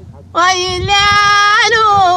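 A woman singing tamawayt, the unaccompanied Amazigh vocal form. Her voice comes in about a third of a second in and holds long, steady notes with small ornamental turns.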